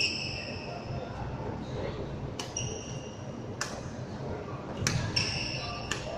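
Badminton rackets striking a shuttlecock back and forth in a rally, about five sharp hits a second or so apart, several with a brief high ping from the strings, in a large sports hall.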